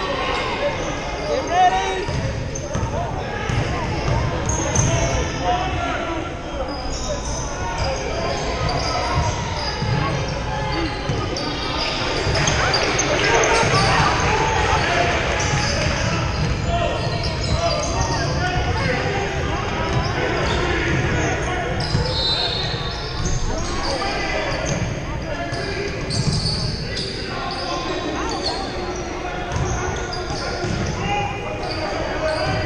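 Basketball being dribbled on a hardwood gym floor during play, with players' and spectators' voices echoing around a large hall.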